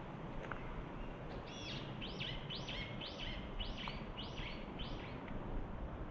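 A songbird singing a run of about eight high, arching notes, roughly two a second, over steady low outdoor background noise.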